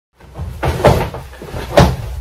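Handling noise from a camera being moved and set in place against a fleece jacket: rubbing with two louder bumps about a second apart.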